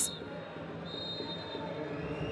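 Stadium ambience from the pitch: a steady low murmur of background noise with faint distant voices, and a brief faint high tone about a second in.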